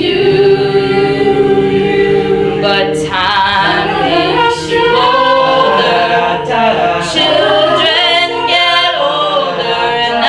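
Mixed-voice a cappella group singing in harmony, with held chords and no instruments.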